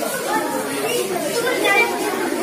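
Many children's voices chattering at once, overlapping with no single clear speaker.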